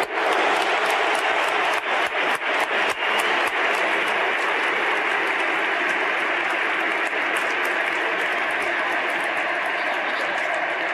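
Stadium crowd of tens of thousands cheering and applauding just after a shouted 'Madrid!' chant, with sharp cracks standing out over the first few seconds before the cheering settles into a steady wash.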